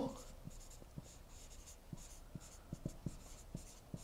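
Dry-erase marker writing on a whiteboard: a series of short, faint strokes with small ticks as the marker touches the board.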